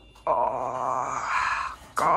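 A person's drawn-out, strained groan of effort, held for about a second and a half at a low, steady pitch and growing brighter toward its end before stopping.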